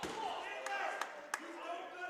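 Basketball gym ambience at a stoppage in play: faint distant voices echoing in the hall, with three short sharp knocks in the middle.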